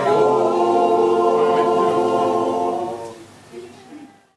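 A group of people singing together without instruments, holding a long chord that dies away about three seconds in.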